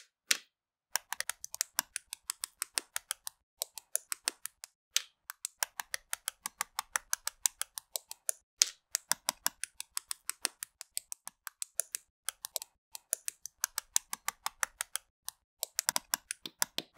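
Plastic LEGO bricks and plates being pressed together: a quick run of sharp clicks, about six a second, broken by a few short pauses.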